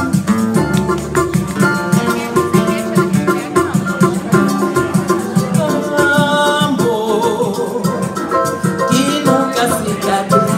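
Live samba band playing, with plucked strings and hand percussion keeping a steady rhythm under a pitched melody line.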